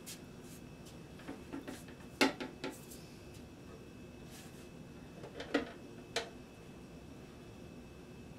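Scattered knocks and clicks from an acoustic guitar and its strap being handled and put on, the loudest about two seconds in and twice more near the end.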